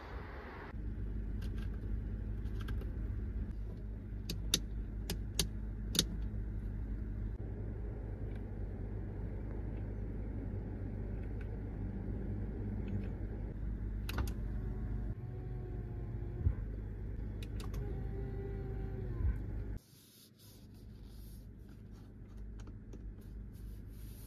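Steady low hum of a car running at idle, with scattered sharp clicks from handling the interior trim. Between about 14 and 19 seconds in, a small electric motor whines in short spells. The hum stops suddenly near the end, leaving a faint hiss.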